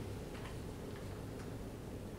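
Steady room hum with a few faint ticks, in two pairs about a second apart.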